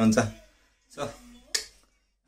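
A man's voice at the start, then a single sharp click about one and a half seconds in.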